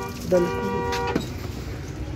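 A vehicle horn sounds once, a steady note held for just under a second before it cuts off, over the background noise of road traffic.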